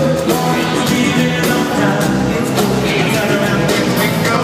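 Funk-rock band playing live with a sung vocal over drums, bass and guitar, heard from the audience in a large arena.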